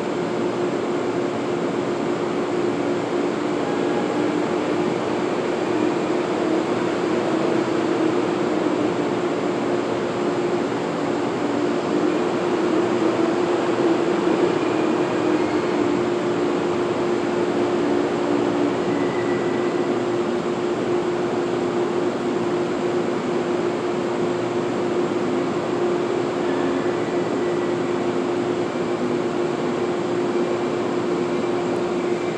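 Steady drone of an underground railway station with a train standing down the track: a continuous hum over a low rumble, swelling slightly around the middle.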